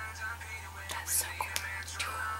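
A faint whispered voice with short hissing sibilants and quiet music underneath, over a steady low hum.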